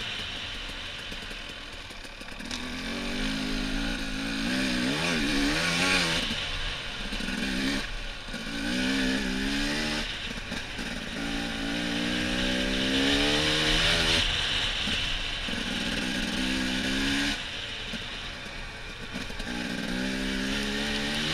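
Dirt bike engine under way on a trail, revving up and easing off in repeated surges as the pitch climbs and falls. A steady hiss of wind and trail noise runs underneath.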